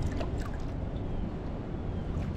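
Wind buffeting the microphone in a steady low rumble, with faint small ticks and splashes of water lapping against the kayak hull.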